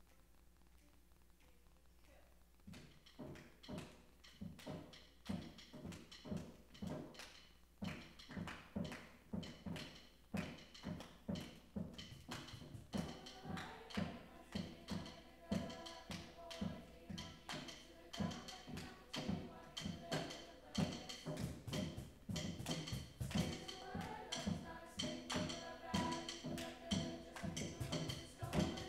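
Hand percussion starts a steady groove of drum strikes, about two a second, a few seconds in. About halfway through, choir voices come in over the beat.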